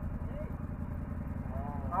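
ATV engine idling with a steady low, evenly pulsing rumble.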